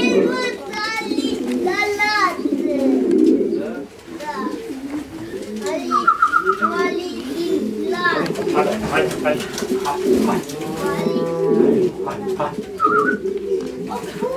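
Several pigeons cooing at once, a dense overlapping low cooing that goes on throughout. Higher, voice-like calls ride on top in the first few seconds, and a short quick trill comes about six seconds in.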